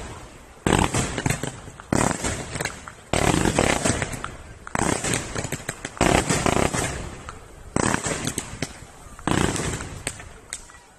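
Fireworks going off in a run of loud bangs, about seven in ten seconds, each one trailing off in a fading crackle.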